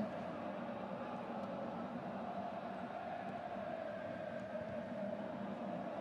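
Steady, low background noise of a stadium crowd and field ambience, as picked up by the broadcast's field microphones, with no distinct events.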